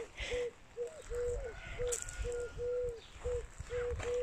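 A bird calling a low, even-pitched note over and over, about two to three notes a second, with every few notes drawn out longer, over a faint low rumble.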